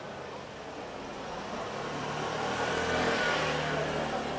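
A motor vehicle driving past on a narrow street. It grows louder to its closest point about three seconds in, then starts to fade.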